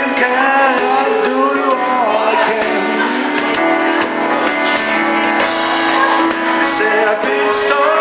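Male vocalist singing a slow soul ballad live, accompanied by a digital piano with keyboard backing.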